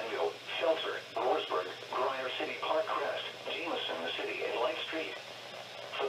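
Speech only: the NOAA Weather Radio broadcast voice reading a severe thunderstorm warning, heard through a weather radio's speaker.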